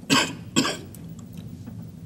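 A man coughs twice, two short sharp bursts about half a second apart, followed by a few faint light clicks.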